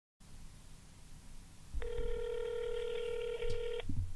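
Telephone ringback tone: one steady ring lasting about two seconds, heard on the caller's end while the other phone rings, over a faint low rumble.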